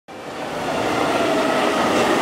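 Mercedes-Benz refuse-collection truck driving slowly past, its engine and tyres growing steadily louder as it draws level.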